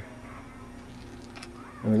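Quiet stretch with a low steady electrical hum and a faint tick about one and a half seconds in as a BB is set into the tip of the coil gun's barrel. A man starts speaking near the end.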